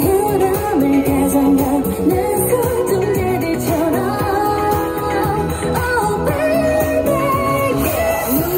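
A K-pop song with sung vocals over a steady beat, played back loudly through a street busking sound system.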